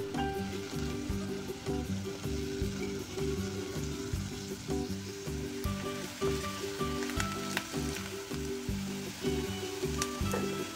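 Chopped onion sizzling in hot oil in a nonstick pot, stirred with a silicone spatula, with a few scraping clicks about seven seconds in. Background music with a steady beat plays throughout.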